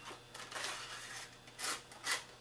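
Thin wire sliding down through a narrow hole in stacked foam blocks: a faint, scratchy rustle with a short, louder scrape near the end.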